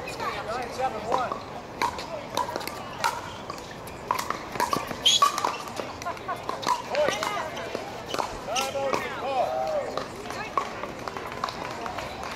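Pickleball paddles striking a hard plastic ball: irregular sharp pops through a rally, loudest about halfway through, with voices in the background.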